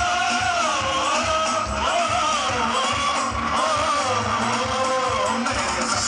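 Live band music with singing and guitar, played loud through a PA system.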